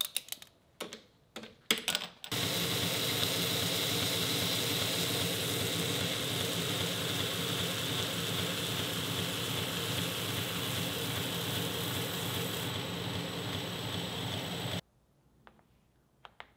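A few clicks and knocks of metal being handled, then a belt grinder running steadily with a copper ring held against the sanding belt. The grinding cuts off suddenly near the end.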